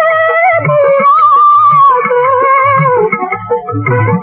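Music from a 1960s Urdu film song: a wavering melodic line that slides about and drops lower about three seconds in, over low drum beats, with plucked strings in the mix.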